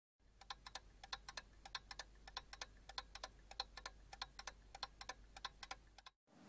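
Faint, rapid ticking clicks, about five a second and unevenly spaced, over a low steady hum.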